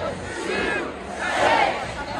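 Large stadium concert crowd shouting and cheering, many voices at once rising and falling in swells about once a second.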